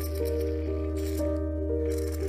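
Background music: a slow keyboard melody over a steady low drone. Short raspy bursts at the start and about a second in come from the model plane's micro servos moving its control surfaces.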